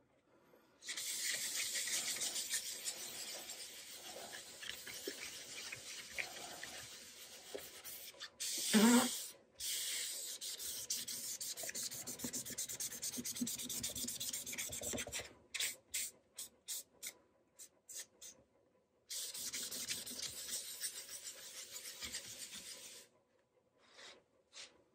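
A rag wet with dye solvent rubbed over the dyed quilted maple top of a guitar body, wiping dye back off the centre: a long stretch of steady rubbing, then a run of short separate strokes, then more rubbing. About nine seconds in comes a brief rising squeak, the loudest sound.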